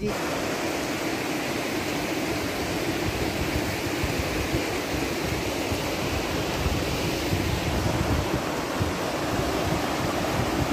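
Fast glacier-fed mountain stream rushing over rocks, a steady, even rush of whitewater.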